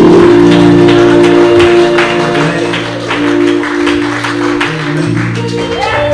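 Church keyboard playing sustained chords, with a steady beat of short, sharp strokes about two a second, like clapping in time.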